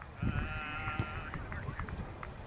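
A single drawn-out call from a voice, held for about a second, with low wind rumble on the microphone under it.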